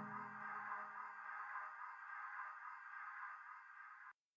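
Fading final tail of a techno track: a sustained electronic synth tone of several steady pitches dies slowly away, while the low bass under it fades out about a second in.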